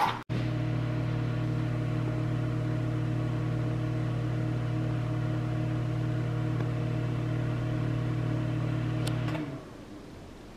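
Whirlpool microwave oven running with a steady electrical hum that stops about nine seconds in as its countdown finishes. The cycle ends without a beep because the beeper has been silenced.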